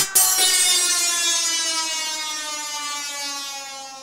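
Dutch house music ending: the beat cuts out and a last sustained synth chord rings on alone, sliding slowly down in pitch as it fades away.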